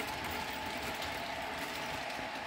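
Model passenger train running on a layout track: a steady mechanical whirr of the locomotives' motors and gears and the wheels on the rails.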